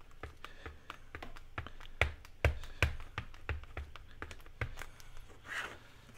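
Acrylic stamp block with a clear stamp tapped onto an ink pad and pressed onto paper: a string of irregular light taps and clicks, the sharpest a little after two seconds in.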